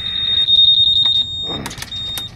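A steady, high-pitched electronic alarm tone, like a buzzer, held for more than a second. It breaks off, then sounds again briefly near the end, with a short vocal sound and a few clicks.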